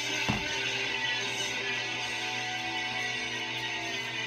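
Background music with steady held notes, and one light knock shortly after the start.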